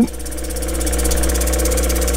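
Lapidary grinding machine running with its wheels spinning: a steady motor hum with a low rumble.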